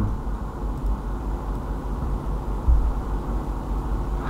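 Steady low hum with faint background noise, no speech: the recording microphone's room and electrical hum.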